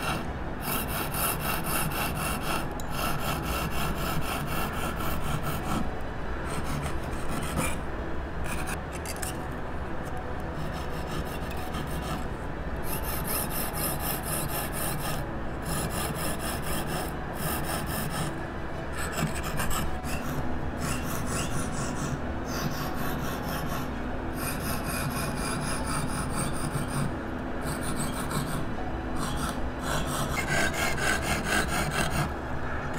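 Hand fretsaw cutting a piece of mother-of-pearl shell on a wooden saw board: quick, steady back-and-forth rasping strokes, with a few short pauses between runs.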